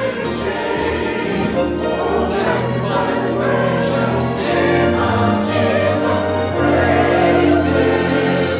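Mixed church choir of men and women singing an anthem in sustained notes, with music underneath.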